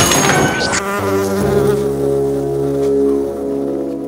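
A loud bang at the start as a door is kicked open, then the low, steady buzzing of a giant cartoon fly's wings.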